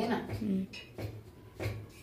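Two light metallic clinks of a steel plate against the kitchen counter, the first about a second in and the second just over half a second later.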